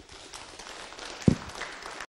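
Audience applause, a steady patter of many hands clapping in a hall, with one loud low thump a little over a second in.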